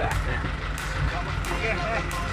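Vehicle engine and road noise heard from inside the cab while driving, a steady low rumble with scattered light rattles.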